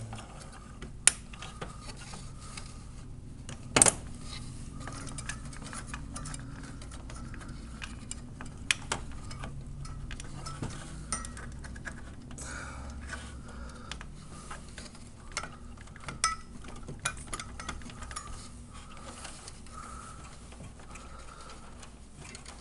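Scattered clicks and knocks of plastic and metal parts being handled: a CPU cooler's black plastic air duct being worked on its heatsink, with a sharp knock about a second in and a louder one near four seconds in. A steady low hum runs underneath.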